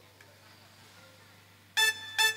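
Faint background for most of the time, then near the end one sudden loud, bright pitched note from a dangdut band's instrument, lasting about a quarter second: a stab from the song's intro.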